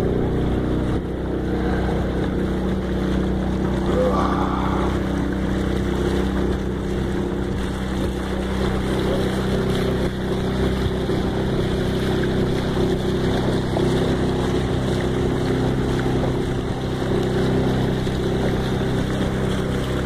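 Small motorboat's engine running steadily at cruising speed, a constant even drone.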